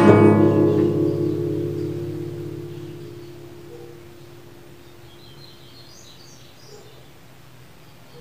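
An acoustic guitar chord strummed once and left to ring, fading away over about four seconds. Faint bird chirps follow a few seconds later.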